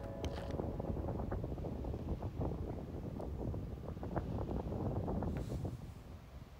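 Wind buffeting a phone's microphone outdoors on a beach: a steady, low, rumbling noise that drops away shortly before the end.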